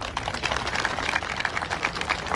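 A crowd applauding: many hands clapping in a dense, uneven patter that starts suddenly.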